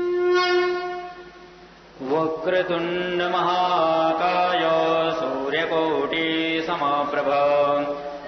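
A blown conch shell's steady tone fades out about a second in. After a short lull a male priest chants Sanskrit mantras in long, sustained notes.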